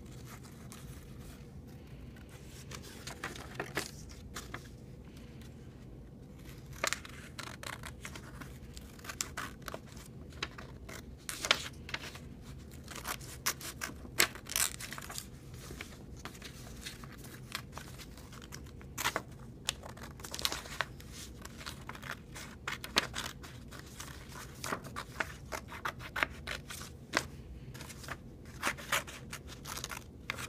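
Small hand scissors snipping through drawing paper in short, irregular cuts, with the paper rustling as it is turned between snips.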